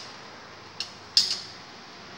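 Two short metallic clinks of a wrench on the quad bike's engine mounting bolt as it is being undone; the second, a little past one second in, is the louder.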